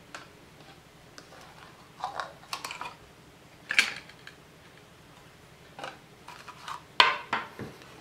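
Plastic packaging being handled: scattered clicks, light knocks and rustles as a clear plastic smartwatch box is taken apart and its insert set down on a table, the sharpest click about seven seconds in.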